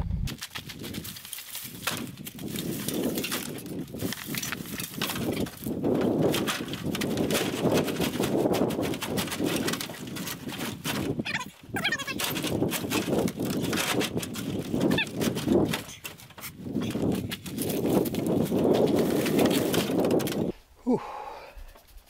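Dry brush and branches crackling and snapping under boots as a man stomps on a load piled in a pickup truck bed to compact it, in repeated surges; it stops near the end.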